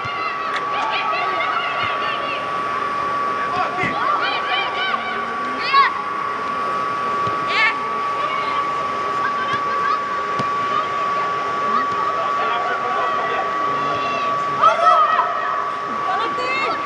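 Players' voices calling and shouting in short bursts across a football pitch inside an air-supported dome, with a few louder shouts, over a steady high-pitched hum.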